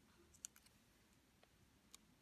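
Near silence, broken by a few faint, short clicks of paper squares being handled and pressed down onto cardstock.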